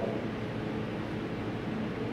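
Room tone: a steady, even hiss with no distinct events.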